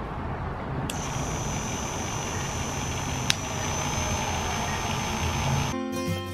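Wahl KM10 corded animal clippers running with a steady motor buzz and low hum. A high whine joins about a second in, and there is a single sharp click a little past halfway.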